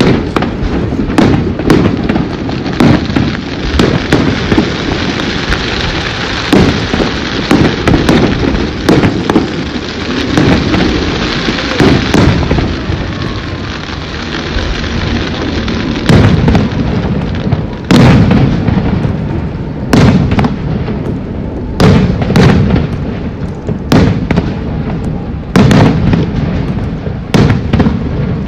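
Aerial firework shells bursting in quick succession, their booms over a dense crackling hiss. In the second half the loud bursts come separately, about every two seconds.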